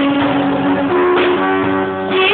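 Guitar-accompanied gospel song, in a stretch where strummed guitar carries the music between sung lines.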